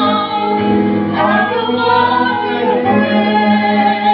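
A woman singing a Christian song into a microphone, with the man's voice and accompaniment beneath. She holds long notes, with a sliding, ornamented vocal run from about a second in.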